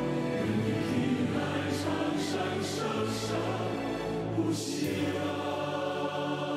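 Choral music: a choir singing a slow song in long held notes over a bass line that changes note every second or so.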